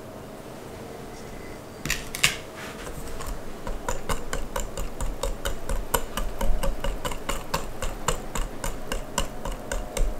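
Wire whisk beating a liquid egg, sugar and oil batter in a glass bowl, its tines clicking against the glass several times a second. The rapid clicking starts about two seconds in, after a quieter stretch.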